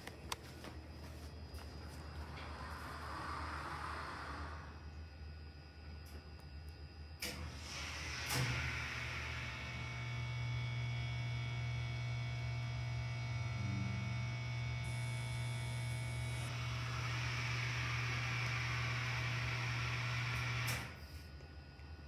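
Hydraulic elevator's pump motor starting with two clicks about a second apart, then running with a steady hum for about twelve seconds before it stops. The starting clicks are taken by the listener to be a wye-delta motor starter.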